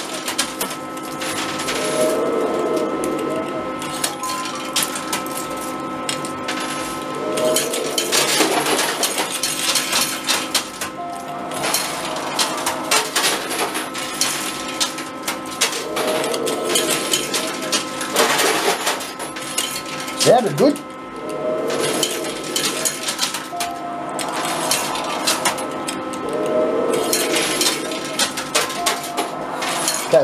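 Coins fed in quick succession into an arcade coin pusher, clinking and clattering as they drop through the machine onto the coin-covered playfield, over a steady din of arcade machines.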